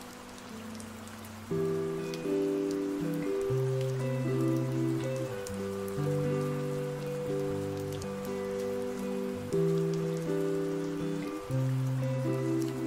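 Lofi music with soft, sustained chords and a slow bass line, which grows louder about a second and a half in, mixed over steady rain with scattered drips.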